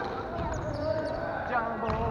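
A volleyball knocking on the wooden floor of a sports hall a few times, amid players' chatter.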